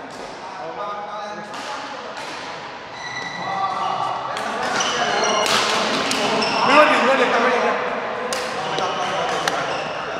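Doubles badminton rally on an indoor court: rackets strike the shuttlecock with sharp cracks, and sports shoes squeak on the court floor, echoing in a large hall.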